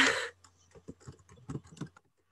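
A brief laugh, then quick, irregular clicking of typing on a computer keyboard.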